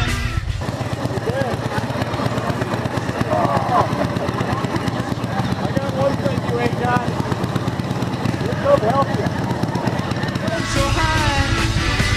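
Motorcycle engines running at low speed as the bikes roll off slowly together, with a steady, close pulsing from the engines. A man's voice and laughter come over it, and background music cuts in and out at the edges.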